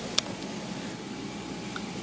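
Steady low room hiss with one short, sharp click a fraction of a second in, from handling the plastic-sleeved sticker package.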